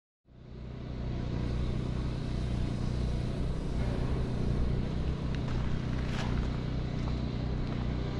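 A low, steady rumbling drone with a hum, fading in over the first second, with a faint brief whoosh about six seconds in.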